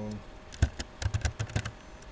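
A quick run of about eight keystrokes on a laptop keyboard, the key clicks coming close together for a little over a second.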